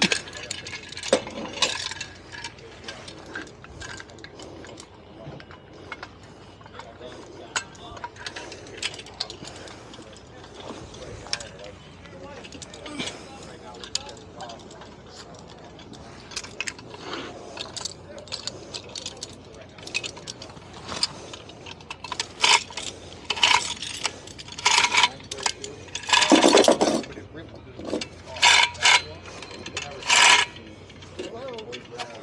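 A hand ratchet on a tie-down strap being worked to tension the strap, its pawl clicking. The clicks are scattered at first, then come in loud, quick bursts over the last several seconds.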